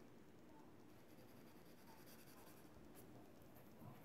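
Faint scratching of a brush pen's tip stroking across paper, with a small tap about three seconds in.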